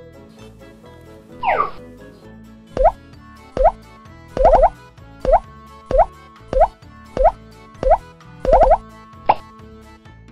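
Cartoon 'plop' sound effects for plastic balls dropping into a play pool: about ten short pops that slide upward in pitch, roughly one every 0.7 s, after a single falling glide near the start, over light children's background music.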